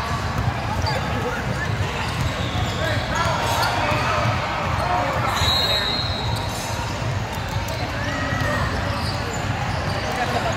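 Basketball bouncing on a hardwood gym floor as a player dribbles up the court, under a steady background of player and spectator voices in a large gym. A brief high squeak comes about halfway through.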